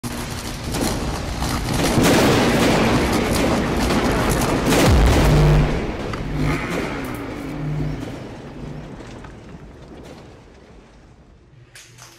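Cinematic logo-intro sound effects: swelling rushes of noise and sharp hits building to a deep boom about five seconds in, then fading away over the following seconds.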